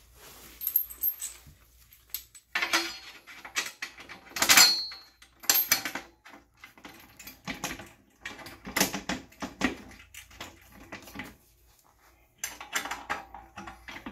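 Bolts, nuts and spacers clinking and rattling metal on metal in short bursts as they are fitted and threaded by hand onto a Wahoo Kickr trainer's side feet. The loudest clatter comes about halfway through.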